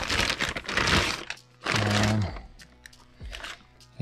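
A clear plastic bag crinkling and rustling as an electronics unit is pulled out of it. The crinkling is loudest in the first second, with scattered crackles later and a brief vocal 'uh' about two seconds in.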